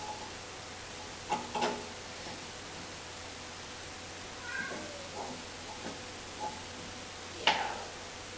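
Rubber ignition-wire boots squeaking and clicking as the wires are pushed into the Marelli distributor cap: a few short, separate squeaks and clicks over quiet room tone.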